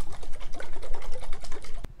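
Liquid sloshing and rattling in a capped glass quart mason jar shaken vigorously by hand, a fast even rhythm, to mix reducer drops into ionic silver solution. A single sharp knock comes near the end as the jar is set down on the table.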